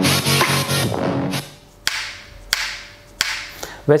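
Music with drums playing from a JBL Clip 4 portable Bluetooth speaker in a sound test. A full, pitched passage runs for about a second and a half, then drops to a sparse section of three sharp drum hits, each ringing out.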